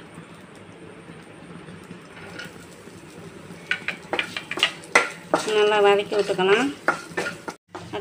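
Oil sizzling faintly in a nonstick kadai. About four seconds in, chopped garlic drops in and a wooden spatula stirs it, with sharp scrapes and taps against the pan.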